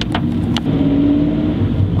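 Car running on the road, engine and road rumble heard from inside the cabin, with two short clicks in the first second.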